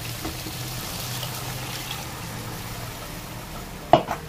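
Half a glass of water being poured steadily into a hot pan of chicken curry masala to make the gravy. A sharp knock comes just before the end.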